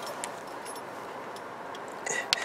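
Quiet car-cabin background hiss with a few faint, scattered clicks.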